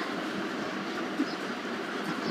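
Caramelised sugar-and-water syrup for homemade soy sauce simmering in a small saucepan over a lit gas burner, a steady hissing bubble. A faint click comes about a second in.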